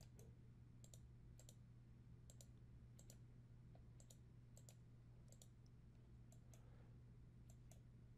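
Faint computer mouse clicks, irregular and often in close pairs, over a low steady hum. They are the clicks that pick the segments to cut away with the Trim command.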